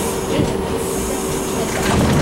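A 1985 R62A subway car braking into a station, heard from inside: steady wheel and track rumble with a thin steady whine that stops about a second and a half in as the car comes to a halt.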